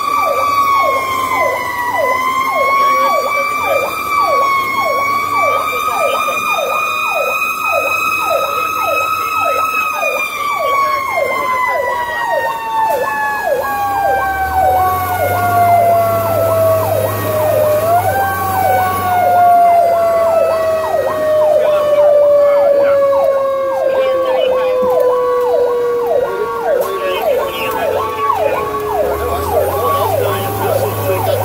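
A fire rescue truck's Federal Q mechanical siren, heard from inside the cab. Its wail holds high for about ten seconds, then winds slowly down in pitch, with a brief spin back up partway through. An electronic siren yelps rapidly underneath throughout.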